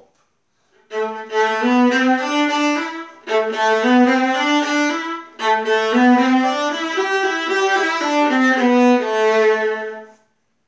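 Solo violin bowed through a pop tune, starting about a second in, in short phrases with brief breaks about three and five seconds in.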